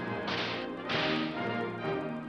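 Two loud swishing noises, each about half a second long, the first a quarter-second in and the second about a second in, over sustained music.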